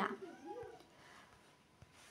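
A faint, short call rising and falling in pitch, about half a second in, followed by quiet room tone.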